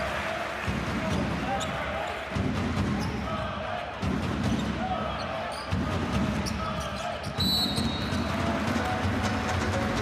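A basketball being dribbled on the hardwood court during live play, over the voices of the arena. A low thump comes about every second and a half, and there is a short high squeak about seven and a half seconds in.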